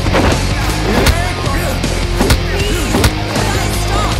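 Loud, tense film background score over a steady low bed, punctuated by sharp hits about once a second, with sweeping glides between them.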